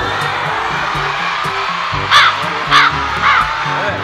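Background music with a steady beat, and a crow-cawing sound effect laid over it: three caws about half a second apart, starting about two seconds in.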